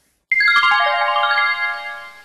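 A short jingle of bell-like chime notes running quickly downward in pitch, each note ringing on as the next begins, then fading out together: an editing sound effect marking the change to the next slide.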